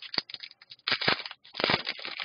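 Trading cards being handled and shuffled in the hand: a string of short rustles and light clicks of card stock, the loudest about a second in and just before the end.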